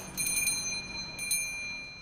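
A small door bell rings with a clear, high tone as a door opens. It is struck again about a second later and then fades away.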